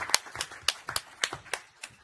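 Scattered applause from a small audience: irregular individual hand claps, several a second, thinning out near the end.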